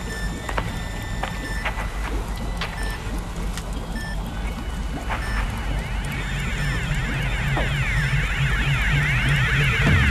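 Electronic dance track intro: a low pulsing bass under thin steady bleeps and scattered clicks. About halfway in, rapid up-and-down synth sweeps come in and the music builds in loudness.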